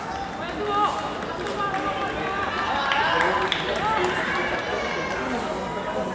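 Footballers' voices calling and shouting across the pitch, several overlapping at once, over outdoor ambience.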